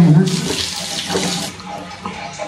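Water running from a bathroom sink tap into the basin, cutting off about one and a half seconds in.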